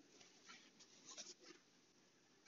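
Near silence, with a few faint scratches and taps of a stylus on a tablet screen.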